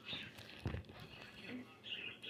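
Kitchen knife slicing down through a large mushroom cap and knocking once onto a wooden cutting board about two-thirds of a second in, with a few faint clicks around it.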